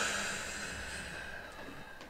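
A long audible exhale, a breathy hiss that fades away over about a second and a half, the controlled out-breath of a Pilates exercise.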